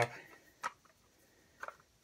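A few light, sharp clicks of small metal and plastic reloading parts being handled as a shell holder is worked loose: one click a little over half a second in, then a quick pair near the end.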